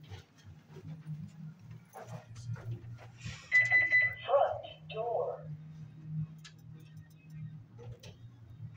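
A single steady electronic beep of about half a second, some three and a half seconds in, followed by two brief indistinct voice-like sounds, over a steady low hum.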